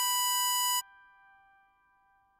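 A harmonica-voiced tutorial melody holding a single note, the hole 7 draw (B5), which stops short under a second in. A faint accompanying chord then lingers and fades almost to silence.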